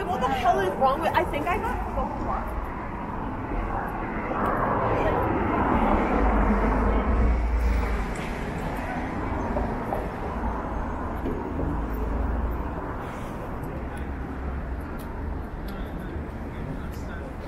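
City street sound with passers-by talking briefly at the start, then a passing engine swells to its loudest about six to seven seconds in and fades, over a steady low traffic rumble.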